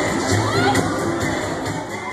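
Dance music playing with a crowd's voices and shouts over it, fading out near the end.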